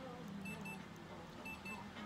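An electronic beeper sounding a high-pitched double beep about once a second.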